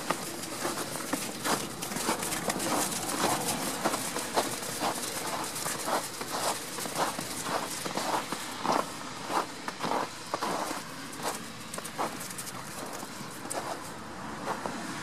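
Footsteps in snow at a steady walking pace, about two steps a second.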